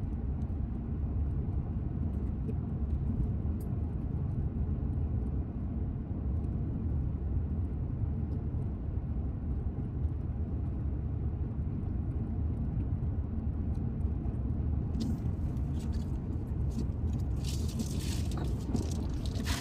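Steady low road and engine noise of a car driving at highway speed, heard from inside the cabin, with scattered sharp clicks in the last few seconds.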